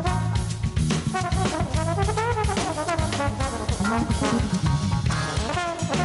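Live jazz band playing: a brass instrument solos in quick, bending runs over drum kit and a low bass line.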